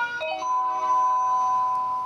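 Railway station platform PA chime: a short electronic melody of clear tones, ending on one long held note that starts to fade near the end. It is the signal that a train-arrival announcement follows.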